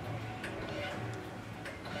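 Faint background voices with a few light, scattered clicks.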